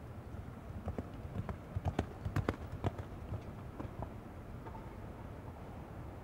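Hoofbeats of a show-jumping horse cantering on the arena's sand footing: a run of uneven knocks that build to their loudest about two seconds in and fade out by about four seconds, over a steady hall hum.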